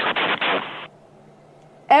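A burst of rushing hiss on the broadcast audio that cuts off suddenly just under a second in, followed by a quiet pause with a faint low hum.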